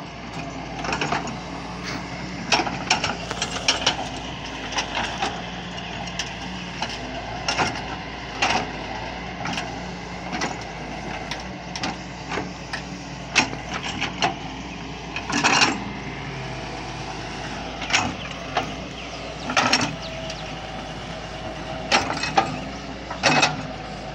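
Doosan DX140 wheeled excavator's diesel engine running steadily under hydraulic load, with frequent irregular sharp cracks and scrapes as the bucket drags through soil and brush.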